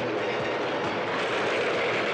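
Heavy truck bearing down and passing close: a loud, steady noise of engine and tyres on the road.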